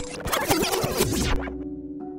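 A harsh, choppy static-like glitch noise burst, a transition sound effect, that cuts off about a second and a half in, over a sustained dark music drone that carries on after it.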